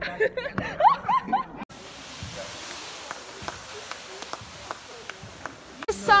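A young woman laughing in short rising and falling bursts for the first second and a half, then an abrupt cut to a steady hiss with scattered faint ticks.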